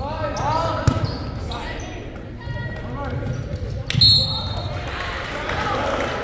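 Volleyball smacks echoing in a large gymnasium during a rally, with a sharp hit about a second in and the loudest one about four seconds in. Players' shouts and spectators' voices run under them and grow louder near the end.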